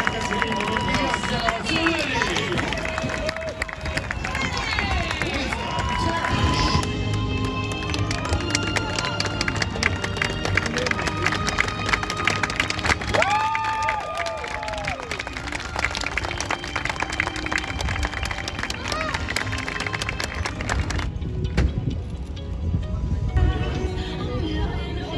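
Outdoor crowd noise with voices, then from about seven seconds in a steady-beat background music track takes over.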